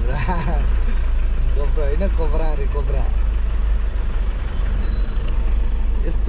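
Steady low rumble of a vehicle's engine and tyres heard from inside the cab while driving in traffic, with short bursts of voices or laughter.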